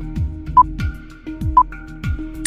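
Quiz countdown timer sound effect: a short high beep once a second, twice here, over background music with a steady beat.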